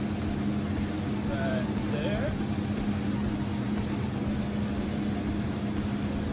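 Steady low hum of running machinery with a constant drone in the background, unchanged throughout. Faint muttering comes in about one and a half to two seconds in.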